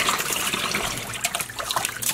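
Tap water running into a plastic tub, splashing and churning over a skein of wool yarn as the soak bath fills. A steady rush of water with small splashes.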